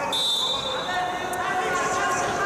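Referee's whistle: one steady, high-pitched blast lasting a little over a second, signalling the restart of the Greco-Roman wrestling bout. Crowd chatter goes on underneath.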